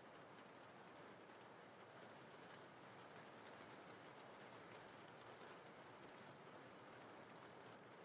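Faint steady rain, a soft even patter.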